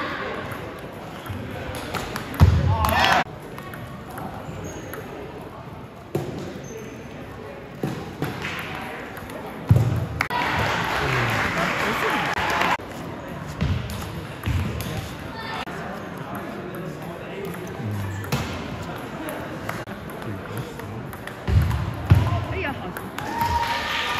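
Table tennis play in a large gym: the celluloid ball clicking sharply off paddles and table in rallies, with occasional thuds of feet on the wooden floor. Voices echo in the hall around them.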